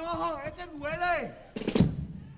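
A drawn-out wavering, gliding vocal sound, then a loud stroke on the chirigota's bass drum and snare drum about a second and a half in.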